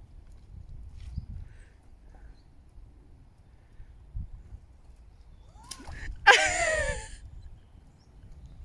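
Low rumble with the slow tread of boots through deep, wet mud, and a faint thud about four seconds in. About six seconds in comes the loudest sound, a woman's short high-pitched cry that falls in pitch as she wades the muddy stretch.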